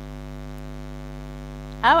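Steady electrical mains hum with a stack of evenly spaced overtones, unchanging in level. A woman's voice comes in near the end.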